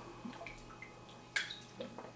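A man taking a drink of water: faint sipping and swallowing, with a couple of small clicks in the second half.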